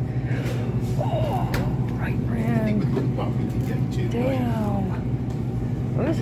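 Steady low hum of refrigerated display cases, with indistinct voices talking over it.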